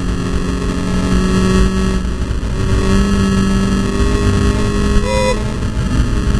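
Volkswagen Scirocco Cup race car at speed, heard from inside the cabin: the engine runs steadily under load over heavy, rough road and wind roar. A brief rising tone comes about five seconds in.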